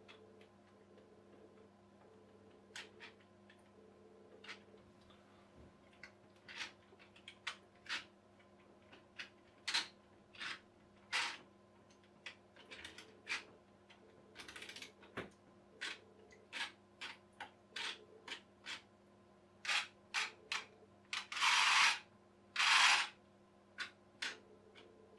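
Clockwork motor of a toy boat being wound by hand: irregular clicks of the winding ratchet in short runs, with two longer, louder rasping bursts near the end.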